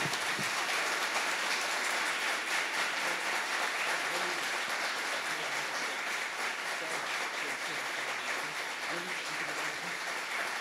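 Audience applauding: dense, even clapping that eases slightly toward the end.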